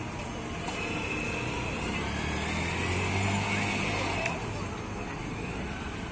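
Street traffic noise with a motor vehicle's engine passing close, its rumble swelling and loudest about three seconds in, over a steady hum of traffic.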